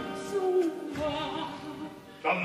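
Operatic singing: a voice holding notes and sliding between them, growing fainter near the end.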